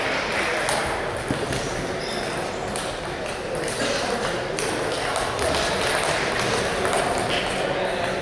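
Table tennis balls clicking irregularly off bats and tables from several tables at once, over a steady background of voices in the hall.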